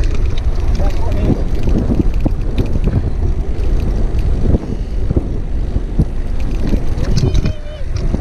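Wind buffeting the bike-mounted camera's microphone as a downhill mountain bike rolls fast over a rough dirt trail, with a steady low rumble and frequent clicks and knocks from the bike rattling over the bumps.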